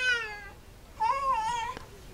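High-pitched crying calls: one trails off, falling in pitch, at the very start, and a short wavering cry follows about a second in.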